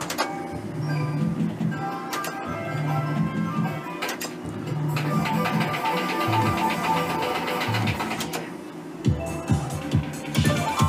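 Merkur 'Up to 7' slot machine playing its electronic game melody while the reels spin, with a run of rapid repeated beeps a few seconds before the end and a quick series of clicks near the end.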